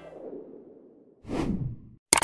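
The tail of the outro music dies away, then a single whoosh sound effect swells up and falls in pitch about a second and a half in, as the end-screen graphics slide in.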